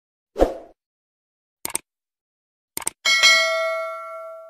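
Subscribe-button animation sound effects: a short soft hit, then two quick double clicks, then a bright bell ding near the end that rings on and fades.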